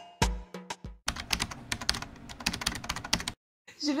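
Percussive intro music ending about a second in, followed by about two seconds of fast, irregular clicking that cuts off abruptly.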